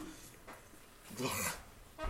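Quiet room tone, then a man says a short, breathy "yeah" a little over a second in.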